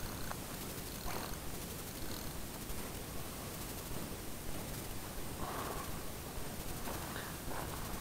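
Steady wind noise on the microphone, with a few faint short sounds about a second in and again near five and a half and seven seconds.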